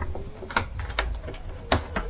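Divider curtain being drawn across its ceiling track, with a few sharp clicks from the curtain glides and hooks running in the track, the loudest near the end, over soft fabric rustle.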